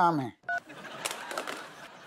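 A mobile phone gives one short electronic beep as a call ends, followed by a soft hiss.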